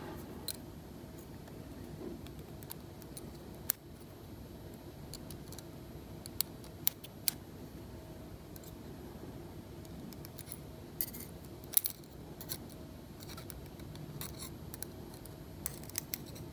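Small, sharp metallic clicks and ticks from steel tweezers picking up and setting down brass pins of a lock cylinder. They come irregularly, with louder clicks around four, seven and twelve seconds in.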